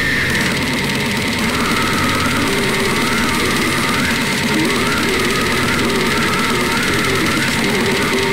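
Slamming brutal death metal recording: heavily distorted guitars and drums, loud and dense throughout, with a wavering high line that rises and falls over it.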